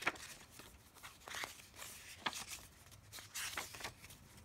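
Paper pages of a small notebook being turned by hand: a few short rustles and flicks of paper, roughly a second apart.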